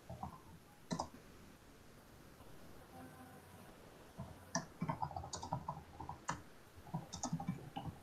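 Light clicking and tapping like typing on a computer keyboard: a single click about a second in, then a busier run of clicks and taps from about four and a half seconds on.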